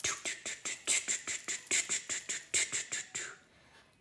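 A fingertip dragging through a thin layer of powdery play snow over crinkled aluminium foil, giving a quick run of scratchy crackles that stops about three seconds in.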